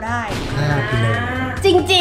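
A cow's moo as an edited-in sound effect: one long call of a little over a second, over background music with a steady beat.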